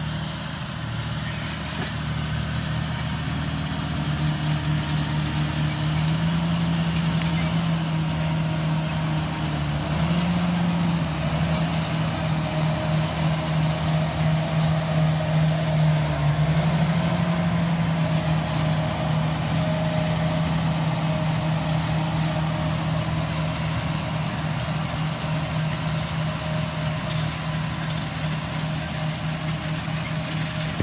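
Large John Deere tractor's diesel engine running steadily as it pulls a multi-row planter past, growing louder toward the middle and easing off after. The engine note rises slightly a few times.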